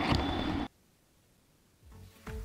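Outdoor background noise with a few sharp clicks, cut off abruptly less than a second in, followed by dead silence.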